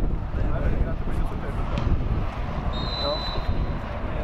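Wind buffeting the microphone with a steady low rumble, under faint shouts from the players. About three seconds in comes one short blast of a referee's whistle.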